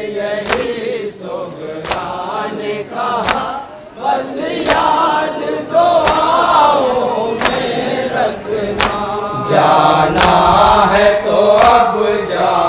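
A group of men chanting a noha together, with sharp slaps of hands on chests (matam) landing on the beat about every one and a half seconds.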